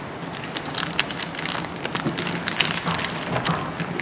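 Sheets of paper rustling and being leafed through at a table close to the microphones, an irregular run of short crackles.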